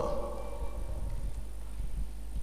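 A pause in a man's speech: steady low electrical hum and room tone, with the last word's echo fading out at the start.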